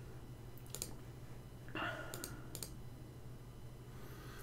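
A few faint, sharp computer clicks scattered through, over a low steady hum.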